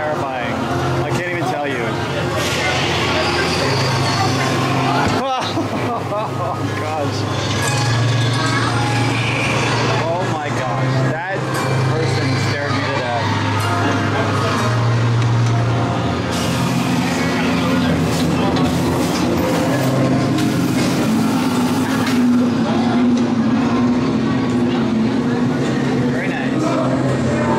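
Haunted-house soundtrack: a loud low droning hum that pulses on and off, with voices layered over it.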